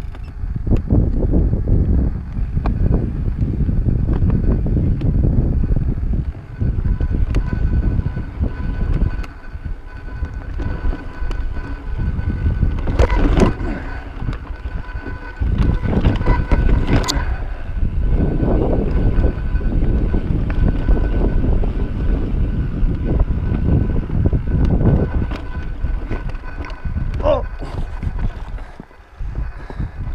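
Mountain bike being ridden fast over sandstone slickrock and rocky singletrack: wind rushing over the camera microphone and tyre rumble that swell and fade with the terrain, with the bike rattling and a few sharp clacks from hits on rock about halfway through. A faint steady high whine sits underneath.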